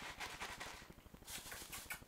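Faint rustling and light scuffling taps, with a few brief scrapes about halfway through.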